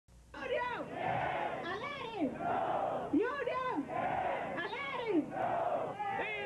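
A large crowd of protesters chanting in a steady rhythm, call and response: a single leading voice and the crowd's shouted reply alternate about every second and a half, starting about half a second in.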